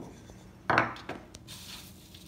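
A wooden mortar and pestle being handled on a wooden table. There is one knock a little under a second in, then a few light clicks.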